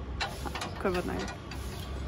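A short bit of speech about a second in, over a low steady hum and a few faint clicks.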